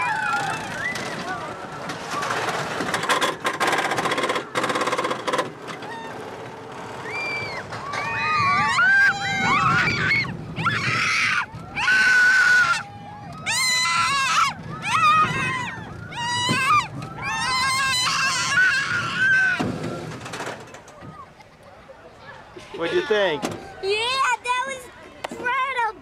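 Ride on a small kiddie roller coaster: a noisy rush of wind and clatter in the first few seconds. Then high-pitched shrieks and excited yells from the riders, the child among them, carry through the middle of the ride, and it goes quieter near the end as the train slows.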